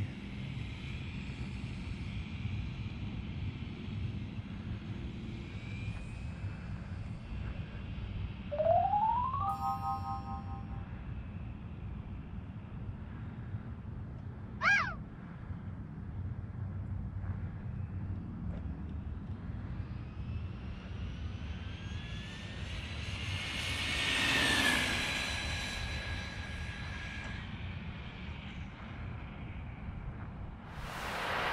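Electric motor whine of a Losi Promoto-MX RC motorcycle accelerating over a steady low rumble. A short rising whine comes about nine seconds in. Later a longer whine climbs in pitch, is loudest a little past the middle of the second half, holds one pitch and then stops. A brief sharp chirp is heard about halfway through.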